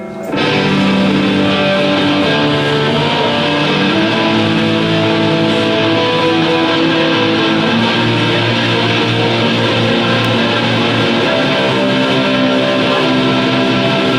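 Rock band playing live: electric guitars, bass guitar and drum kit. After a held chord, the full band comes in just after the start and then plays on at a steady loudness.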